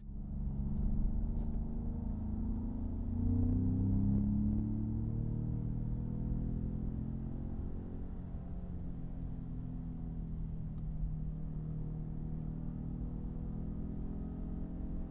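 Pickup truck engine running as it drives, its pitch rising to a peak about four seconds in, then easing back and running steadily.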